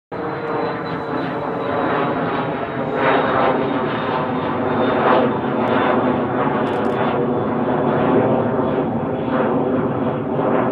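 Airbus A330-243's Rolls-Royce Trent 700 turbofan engines running at high thrust on the takeoff roll: loud, steady jet engine noise with a thin high whine on top, swelling and easing slightly every couple of seconds.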